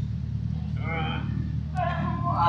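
Steady low rumble of city street traffic, with a short voice about a second in and people starting to talk near the end.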